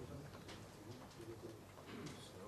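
Faint room sound of a seated audience in a large hall, with low murmuring voices.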